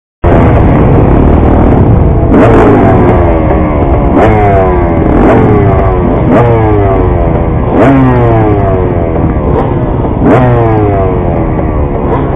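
Motocross bike engines revving hard at the starting gate, the throttle blipped about seven times with each rev falling away over a steady idle: riders holding the revs up while waiting for the gate to drop.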